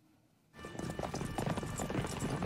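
Near silence, then about half a second in a mass of horses galloping sets in: a dense, rapid clatter of hoofbeats from a cavalry charge in a film soundtrack.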